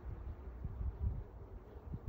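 Wind buffeting the microphone in uneven low gusts, with a faint steady hum of bees.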